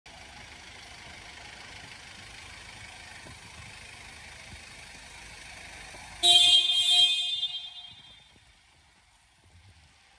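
Steady outdoor background noise as a van rolls slowly, then about six seconds in a loud vehicle horn sounds twice in quick succession and trails off.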